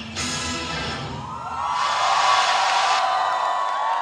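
Dance music with a steady heavy beat that cuts off about a second in. A large audience then screams and cheers.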